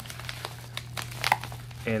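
Plastic bubble-wrap packing and a padded paper mailer crinkling as hands pull the packing out, a scatter of soft crackles.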